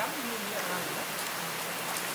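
A river running over rocks: a steady, even rushing hiss, with faint voices in the distance.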